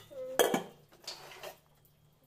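Stainless steel plates, bowls and tumblers clanking against each other as they are handled in a tub: one sharp clank about half a second in, then fainter clinks.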